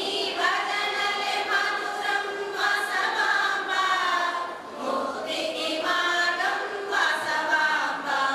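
A chorus of women singing together in one melodic line, with a brief pause for breath about halfway through.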